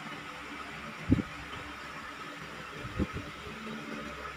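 Low, steady background noise with a faint hum, broken by two soft thumps, one about a second in and another near three seconds.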